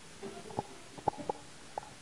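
Faint handling noise from a handheld microphone being passed from one person to another: a few soft clicks and bumps.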